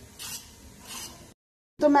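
Kitchen knife blade scraping the skin off a sponge gourd: two short, faint scraping strokes, then the sound cuts off abruptly.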